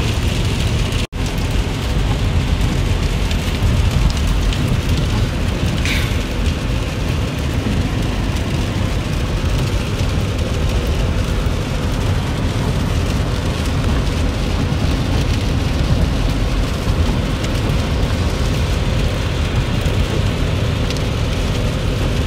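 Steady road noise inside a moving SUV's cabin at highway speed in the rain: tyres on wet pavement and rain on the body, over a low rumble. The sound cuts out for an instant about a second in.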